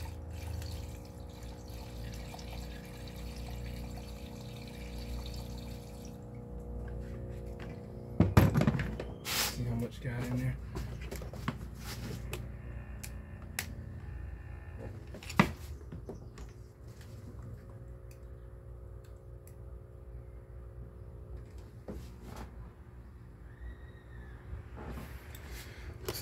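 Diesel fuel poured from a jar through a funnel into an engine's spark plug bore, trickling steadily for about the first six seconds. After that come a few sharp knocks and clatters of handling, the loudest a little after eight seconds, over a steady low hum.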